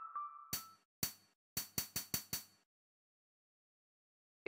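Battery 4 drum sampler playing short, sharp percussion samples. After the tail of a pitched note, two hits come about half a second apart, then a quick run of five.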